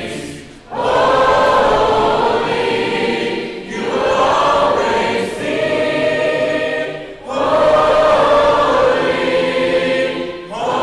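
A large congregation singing a hymn a cappella in four-part harmony, many voices together with no instruments. The singing comes in long phrases with brief breaths between them, about half a second in, near four seconds and about seven seconds in.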